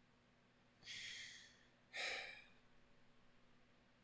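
A man's breathing: a soft breath about a second in, then a short breathy sigh just after.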